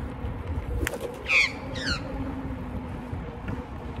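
Swooping Australian magpie squawking twice, harsh short calls about a second and a half in.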